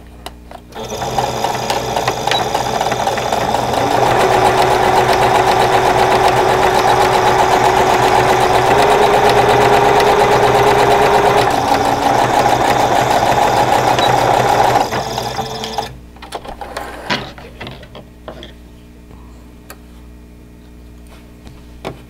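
Electric Singer sewing machine stitching a half-inch seam through layered cotton. It starts about a second in, speeds up to a steady fast run, then slows and stops about three-quarters of the way through, leaving only a few light clicks.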